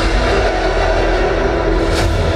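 Film trailer soundtrack opening: a steady deep rumble under sustained, droning musical tones.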